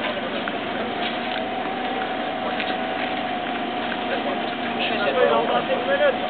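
Indistinct talk and chatter from a group of people, over a steady hum. A voice grows louder about five seconds in.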